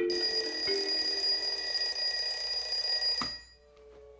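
Alarm clock bell ringing loudly and steadily for about three seconds, then cut off abruptly with a click, as if switched off.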